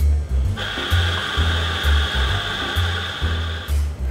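Espresso machine steam wand hissing steadily for about three seconds, starting about half a second in and cutting off sharply near the end, over background music with a steady bass line.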